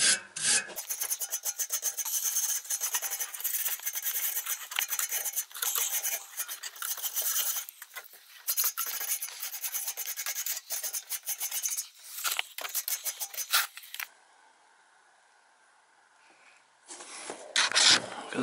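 A coil brush scrubbing across the fins of an air handler's evaporator coil in quick, repeated rasping strokes. The brushing stops about fourteen seconds in, and a few seconds of near silence follow.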